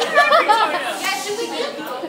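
Indistinct chatter of several young people talking at once, echoing in a large school hallway.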